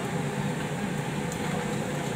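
Steady background noise around a street-food squid grill stall: a low hum with hiss above it, and no single event standing out.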